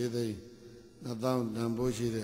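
A male Buddhist monk preaching a dhamma talk into a microphone, in Burmese. The voice comes in two phrases with a short pause between them.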